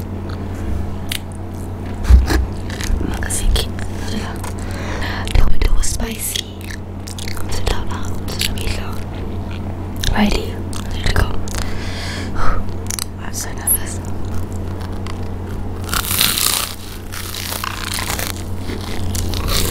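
Close-miked chewing of a crumb-coated cheesy corn dog, with crackly crunches and wet mouth sounds, and a loud crunchy bite a couple of seconds before the end.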